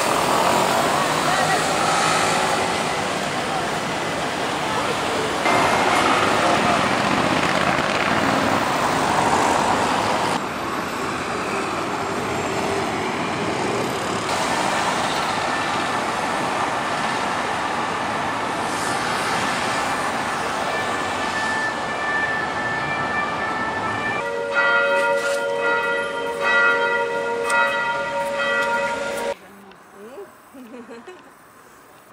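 Road traffic and crowd chatter on a busy city boulevard, cars passing, changing abruptly at a few cuts. Near the end, bells ring with several loud strikes, the loudest moment, before the sound drops sharply.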